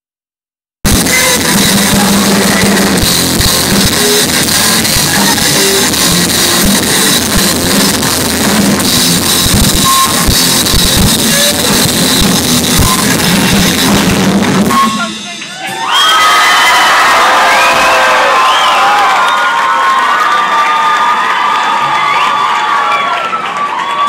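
Sound cuts in abruptly about a second in on a loud live rock band, with drums, guitar and crowd together. The music stops about fifteen seconds in, and after a brief dip the crowd cheers and screams.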